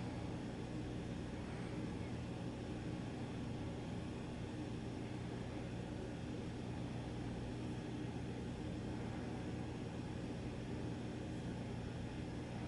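Steady low background hum with a faint even hiss: room tone, with no distinct events.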